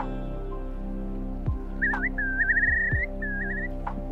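Slow instrumental music with steady chords and low drum beats. Over it, about two seconds in, comes a whistled, rapidly rippling trill in two phrases, the titter call of a whimbrel.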